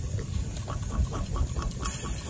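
Chicken pieces grilling over glowing charcoal on a small wire grill: faint, irregular crackling and ticking, with a low rumble underneath.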